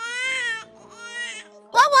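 A baby crying, a wavering 'wah' wail that rises and falls in pitch and stops after about half a second. Near the end a woman says 'wah-wah'.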